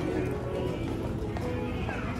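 Background music with steady held notes over airport terminal hubbub: voices and light knocks of footsteps and suitcase wheels on the tiled floor.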